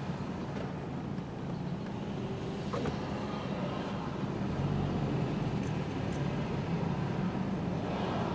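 Steady low hum of a car running at low speed in slow traffic, heard from inside the cabin.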